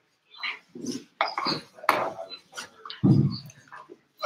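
Indistinct room noise in short, broken bursts: scattered voices and small knocks, with a loud low thump about three seconds in.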